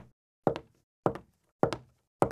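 Footstep sound effects keeping time with an animated walk: about four evenly spaced steps, one a little more often than every half second, each a quick double knock.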